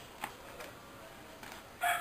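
Quiet outdoor background with a single faint click about a quarter second in; just before the end a rooster starts crowing loudly.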